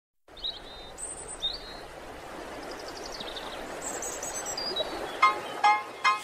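Bird chirps and short descending trills over a steady hiss as the intro of a song; about five seconds in, short pitched notes begin, a little under half a second apart.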